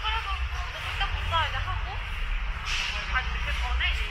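Busy city street sounds: a steady low rumble of traffic under the voices of passersby talking, with a brief hiss about two-thirds of the way through.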